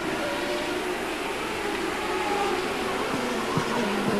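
Onboard sound of a CART Indy car's turbocharged V8 engine running at speed, a steady engine drone under a constant rush of wind and road noise.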